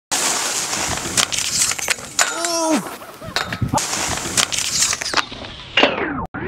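Skis hissing over snow, broken by several sharp knocks as the skis hit a metal rail and the skier crashes. A short falling shout comes about two and a half seconds in.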